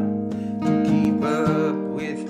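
Acoustic guitar played in a slow song, with a man's singing voice over it, holding notes with a slight waver.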